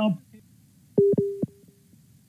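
A short steady electronic beep: one low tone about a second in, lasting about half a second, broken by clicks, followed by a fainter brief trace of the same tone.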